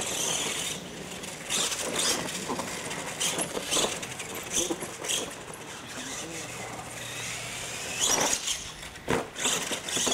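R/C monster truck driving hard on a dirt track: its motor whine rises and falls with the throttle, with tires scrabbling on the dirt and knocks as it hits the wooden ramps.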